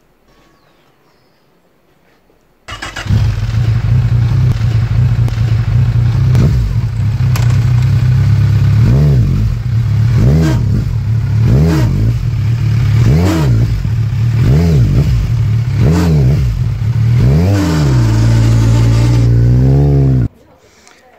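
Kawasaki Z1000 inline-four motorcycle engine starting suddenly about three seconds in and idling. About halfway through it is blipped repeatedly, the revs rising and falling about every second and a half, then held up briefly near the end. This is the engine whose start the owner says brings a harsh noise from the clutch pressure plate.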